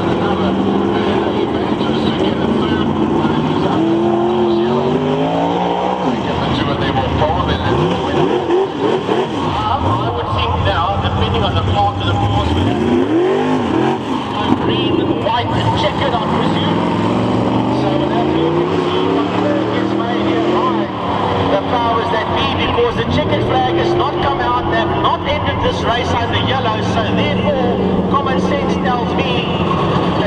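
Several V8 dirt-track race cars running together, their engines revving and easing off as they go through the turns. The pitch repeatedly rises and falls as cars pass by.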